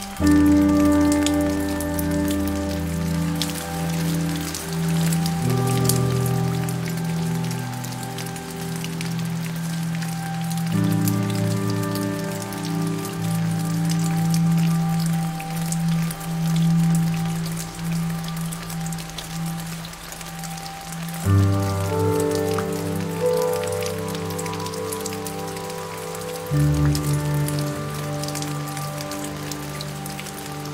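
Steady rain falling, mixed with soft, slow piano music: held chords that change every five seconds or so.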